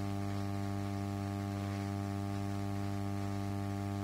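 Steady electrical mains hum: a low, even buzz with a ladder of overtones that holds at one level throughout, with nothing else over it.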